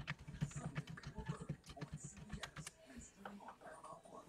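Typing on a computer keyboard: a rapid run of key clicks.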